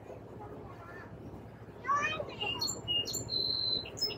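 A songbird singing in the second half: a few short high whistled notes, then one steady held whistle near the end.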